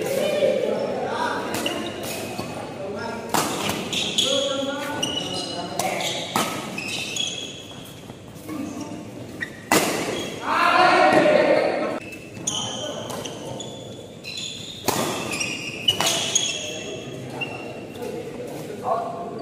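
Badminton rally: sharp racket strikes on the shuttlecock, shoes squeaking on the court floor, and players' voices, with a loud shout about ten seconds in.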